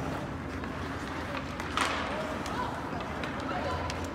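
Ice hockey game heard from the stands: skates on the ice and faint distant voices, with one sharp clack about two seconds in.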